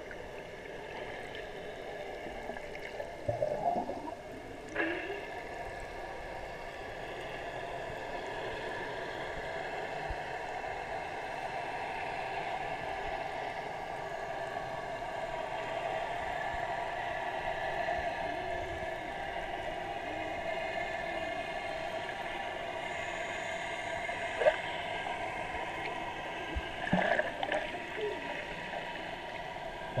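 Muffled underwater sound of a swimming pool heard through a submerged action camera: a steady watery wash with gurgling as a child kicks and paddles close by. There are a few brief, louder splashy bursts a few seconds in and again near the end.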